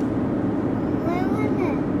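Steady road and engine noise inside a moving car's cabin, with a faint voice murmuring about a second in.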